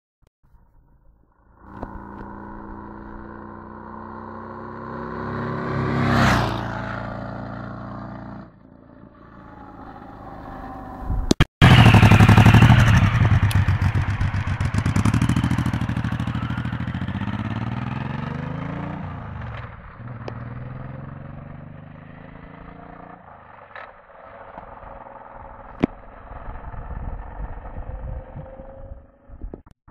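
Big V-twin cruiser motorcycles. The first approaches and passes by, its engine note swelling to a peak about six seconds in and then fading. After a brief cut about eleven seconds in, the loudest part follows: the Suzuki M1800R accelerating hard away, its note climbing in pitch through several gears before fading, with a few sharp clicks near the end.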